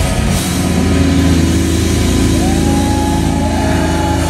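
Live heavy metal band through the stage PA: drums and distorted electric guitars play, then about half a second in the drumming drops out and a distorted guitar chord is held ringing. About halfway through, a higher guitar note slides up and holds.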